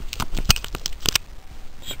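A quick run of sharp clicks and crackles from hands handling plastic and metal parts, the loudest about half a second in, dying down after about a second.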